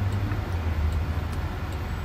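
Steady low hum inside the cabin of a stopped electric car, with traffic around it.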